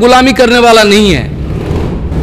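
A man speaking into a microphone for about the first second, then a low, steady rumble with no voice over it for the rest.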